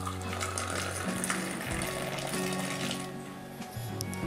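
Milk tea poured in a thin stream into a clay cup, splashing and frothing as it fills, over background music.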